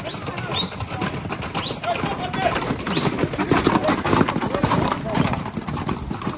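Hooves of Camargue horses and young bulls running on an asphalt street, a dense clatter that grows louder as they pass close by, with people shouting and a few short high whistles.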